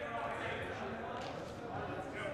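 Faint distant voices of people talking in a large indoor sports hall, over a steady room hum.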